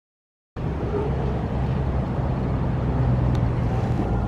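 Silence for about half a second, then a steady low engine-like drone with a hum over a bed of outdoor noise.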